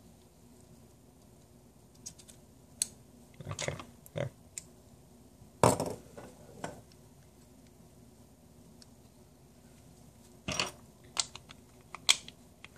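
Small metal parts of an RG14 .22 revolver being handled and fitted back together: scattered clicks and clinks, the loudest about halfway through, as the cylinder and cylinder pin go back into the frame.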